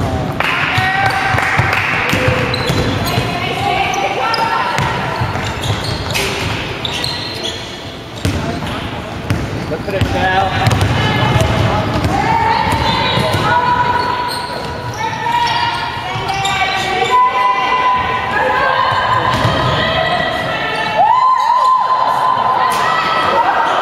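Basketball game sounds on a wooden sports-hall court: a ball bouncing as it is dribbled, with sharp knocks scattered throughout, under the shouted calls of several players and spectators.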